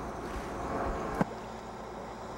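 Steady outdoor noise of water and wind around a small submersible at the surface. A sharp click a little over a second in, after which the noise is quieter and steady.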